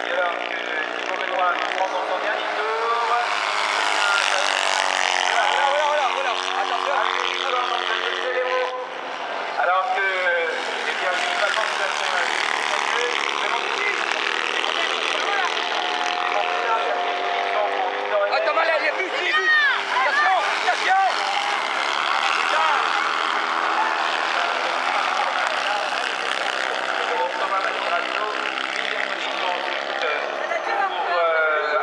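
Racing buggy engines running and revving around a dirt track, with rising and falling pitch sweeps as the buggies accelerate and pass. A public-address voice is mixed in.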